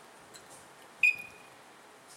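A single short, high electronic beep about a second in, fading quickly, while a sliding-gate opener's control unit is being paired with a mobile phone.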